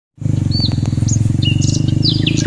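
A motorcycle engine running steadily at low revs, with fast even pulsing, over which several short high whistled bird calls sound, one sliding down in pitch about half a second in and another held a little before the end.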